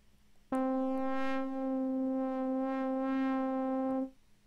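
Bitwig Polysynth playing one sustained note at a steady pitch, starting about half a second in and cutting off at the end. Its upper overtones brighten and fade as the timbre slide sweeps the oscillator FM amount.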